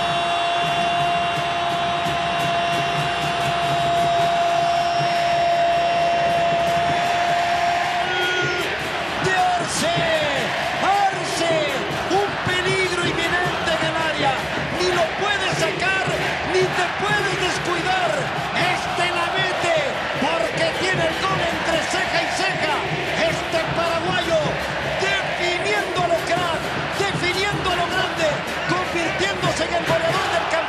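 A sportscaster's long held 'gooool' shout for about the first eight seconds, ending with an upward lift. Then a stadium crowd cheering and singing in celebration of the goal.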